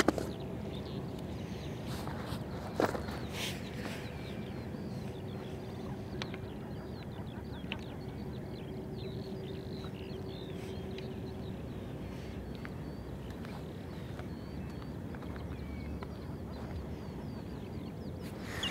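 Many distant birds calling in short chirps over a steady low outdoor rumble, with a couple of faint knocks in the first few seconds.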